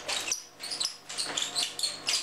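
Wooden bead-roller foot massager clicking and rattling as it is rolled back and forth over the sole and heel, a quick irregular run of small wooden clicks.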